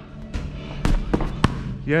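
Boxing gloves striking training pads: a quick combination of three sharp smacks about a third of a second apart, over background music.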